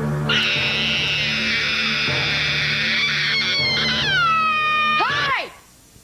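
A young girl's long, high scream over a sustained low music chord; the scream wavers, drops in pitch about four seconds in and ends with a short rising-and-falling cry near five seconds, after which the sound cuts off abruptly.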